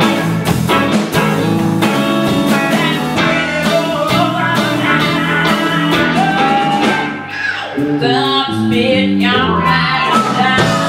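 Live blues band playing: electric guitars, bass and drum kit, with a woman singing into the microphone. The drumming thins out and the music dips briefly about seven seconds in.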